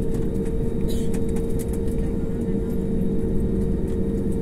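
Jet airliner's engines at taxi power heard from inside the cabin: a steady drone with a constant hum, and a few light clicks and rattles as the plane rolls along.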